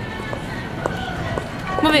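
Steady background noise of a store aisle with faint background music and a few light clicks; a voice comes back near the end.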